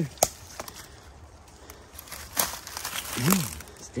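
Dry leaf litter and twigs crackling and crunching, with a sharp click about a quarter-second in and scattered small clicks after it.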